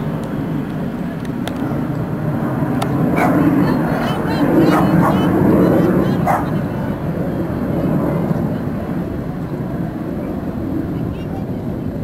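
Four-engine Boeing 747 Shuttle Carrier Aircraft, carrying Space Shuttle Endeavour, flying low overhead: a steady jet rumble that swells to its loudest around the middle as it passes.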